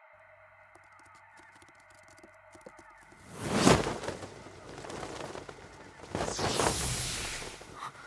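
Animated fantasy soundtrack: a soft, sustained ambient music pad, then from about three seconds in a few loud whooshing sound effects, the strongest one just after the pad gives way.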